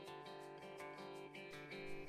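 Faint background music with a plucked string instrument picking out a steady run of notes.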